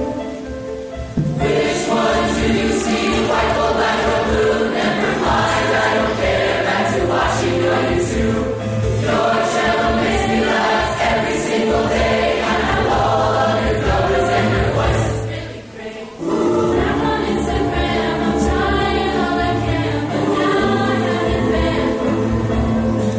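High school choir singing a song in a concert performance. There is a short drop between phrases about fifteen seconds in, then the singing resumes.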